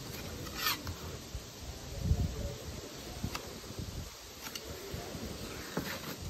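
Fillet knife cutting through a walleye on a plastic cutting board: a few short scrapes and taps, with a low knock about two seconds in.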